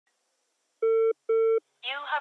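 Two short identical electronic telephone beeps in quick succession as a call goes through, then a recorded automated voice starts over the phone line, thin and band-limited.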